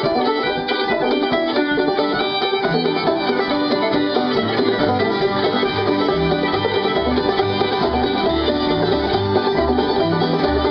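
Live acoustic bluegrass band playing an instrumental passage: banjo, fiddle and acoustic guitar, with mandolin, picking the tune together. Low bass notes come in strongly about halfway through.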